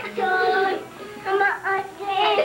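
A young child singing in a high voice: a long held phrase, a short break about a second in, then a shorter phrase.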